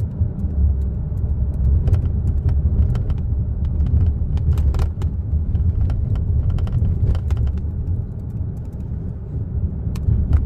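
Steady low rumble of a car cabin on the road, with scattered light clicks of laptop arrow keys being pressed.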